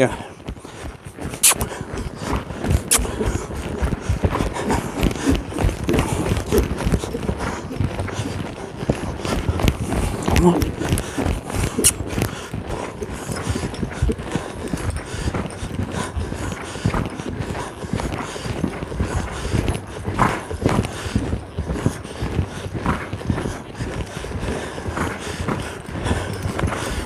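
Hoofbeats of a horse loping on sand footing: a continuous run of dull thuds in a steady gait rhythm.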